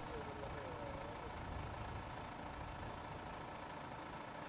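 Iveco Stralis articulated lorry's diesel engine idling, low, steady and faint.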